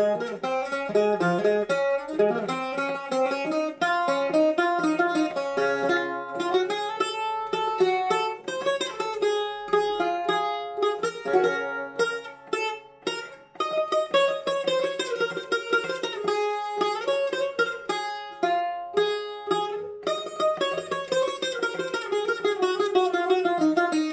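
A solo Greek bouzouki plays a rebetiko instrumental passage of quick picked melodic runs. It breaks off briefly about thirteen seconds in, and fast repeated strokes come near the end.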